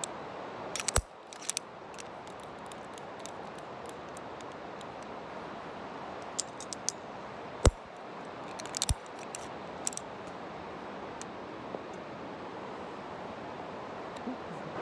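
Locking carabiner and anchor hardware clicking and clinking as a climber clips into a bolt, with a few sharp metal clicks scattered through, over a steady background rush.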